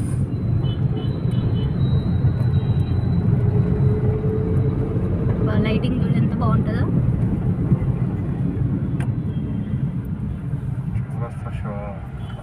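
Steady low rumble of engine and road noise inside the cabin of a moving car.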